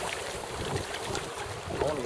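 Wind buffeting the microphone over the steady wash of river water around a moving canoe; a voice starts near the end.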